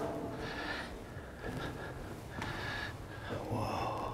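A person breathing close to the microphone, a few short audible breaths about a second apart.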